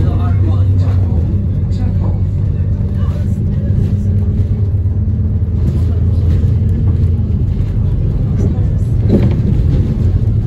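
Bus engine and drivetrain heard from inside the passenger cabin: a steady low drone as the bus drives along, with road noise.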